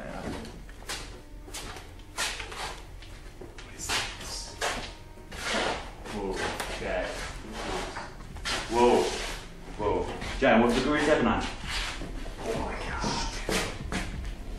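Indistinct, hushed voices mixed with bumps, shuffling and rustling of people moving about close to a handheld camera's microphone, with two louder stretches of voice a little past the middle.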